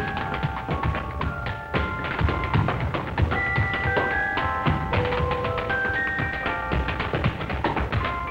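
Tap dancing: quick, irregular shoe taps on a hard floor over band music with held notes, on a narrow-band 1930s film soundtrack.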